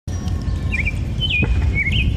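Outdoor ambience: a few short bird chirps over a steady low rumble.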